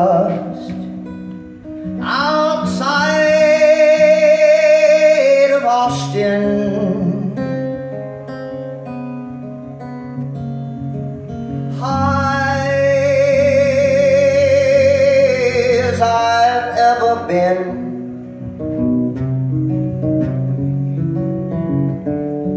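A man singing live over his own acoustic guitar, holding two long notes with vibrato, each three to four seconds, about ten seconds apart, while the guitar keeps playing underneath.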